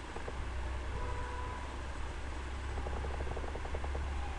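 Steady low hum under an even hiss: background room noise picked up by the microphone, with a brief run of faint rapid ticks about three seconds in.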